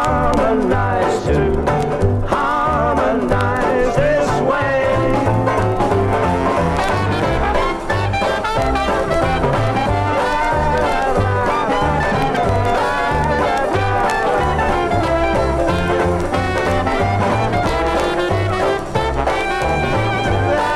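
Upbeat swing-style trad jazz band with brass playing over a steady, even bass beat.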